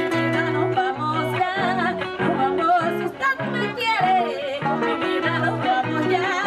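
Live Panamanian música típica played through a PA: a woman singing a wavering melody with strong vibrato over strummed acoustic guitar, a pulsing bass line and percussion.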